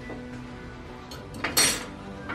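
A metal spoon clinks against a dish or pot once, about one and a half seconds in, with a brief ringing, over faint music playing in the background.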